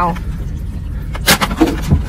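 A crab is handled and dropped into a plastic bucket: one sharp knock about a second in and a few lighter clatters near the end, over a low steady rumble.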